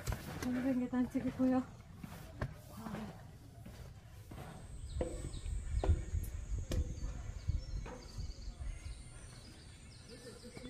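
Footsteps on steel stairs: irregular metallic knocks, about one a second, as hikers step down the steel steps and mesh landings of a steep mountain stairway. A short vocal sound comes right at the start.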